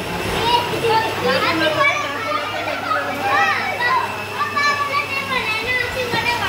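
Several children's high voices talking and calling out over one another in a continuous chatter, with a faint steady low hum underneath.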